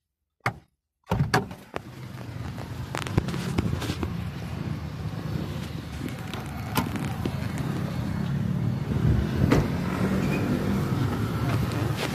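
A car door being opened, with a few sharp clicks and knocks as someone climbs out of the car, over a steady low hum of a running vehicle. The sound starts after about a second of silence.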